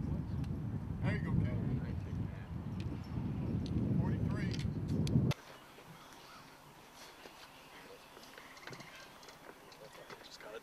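Wind buffeting the microphone outdoors, a loud low rumble with faint distant voices in it, cutting off suddenly about five seconds in. After that comes a much quieter outdoor background with faint distant chatter.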